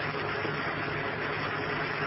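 Steady background hiss with a faint low hum, the noise floor of the lecture recording, with no distinct event.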